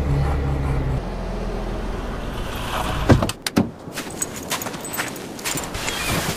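A Subaru car running with a steady low hum, then two sharp thumps about three seconds in, half a second apart, after which the background is quieter and airy with scattered small clicks.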